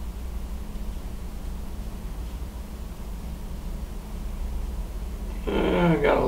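Steady low hum with faint room tone and no distinct handling sounds; a man's voice begins near the end.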